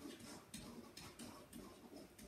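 Faint, light taps and scratches of a pen on an interactive whiteboard's surface as a word is handwritten, a quick irregular series of strokes.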